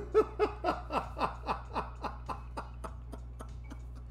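A person laughing: a run of about a dozen short pitched "ha" bursts, about four a second, loudest at the start and trailing off over about three seconds.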